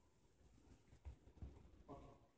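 Near silence: faint hall room tone with a couple of soft low thumps a little past one second in. A voice starts just at the end.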